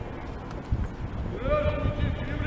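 Cavalry horses' hooves clopping irregularly on stone paving. About one and a half seconds in, a long drawn-out shouted command rings out over them.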